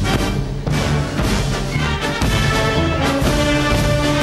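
Music: a theme with held notes over a steadily repeating low bass line.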